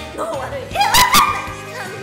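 A young woman's high-pitched laughing, peaking in two loud, sharp bursts about a second in, over background music.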